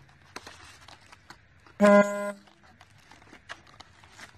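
Faint scrapes and ticks of a cardboard box being slid open. About two seconds in, a loud, steady honk like a car horn cuts in for about half a second, strongest at its start.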